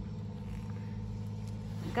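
Steady low engine hum, running evenly without change in pitch.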